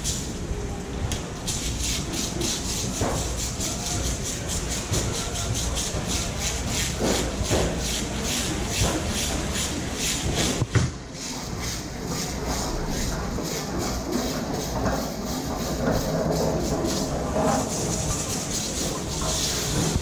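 Fish market hall ambience: a steady mechanical hiss and rumble with a fast, even ticking rattle, about two or three ticks a second, and a single sharp knock about eleven seconds in.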